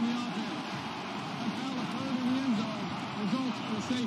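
A man's voice from a football broadcast, speaking in short phrases over a steady stadium crowd noise.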